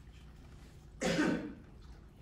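A person coughing once, a sudden loud burst about a second in that lasts about half a second, over a steady low room hum.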